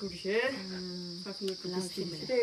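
A steady, high-pitched chirring of insects, with a quieter voice talking underneath.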